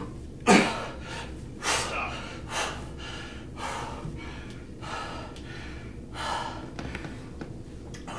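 A man breathing hard and winded after kettlebell swings: sharp gasps and exhales about once a second, the first and loudest about half a second in, growing softer near the end.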